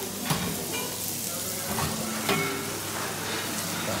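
Buffet-room noise: a steady hiss with faint background clatter, broken by a few sharp metallic clinks as a stainless chafing dish lid is handled, the first just after the start.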